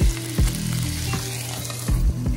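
Water poured into a hot, oiled pan of gyoza, sizzling and spitting loudly as it hits the oil and turns to steam: the start of steam-frying the dumplings.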